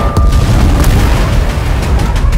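Booming explosion effects layered over loud action-trailer music, with a heavy deep rumble throughout.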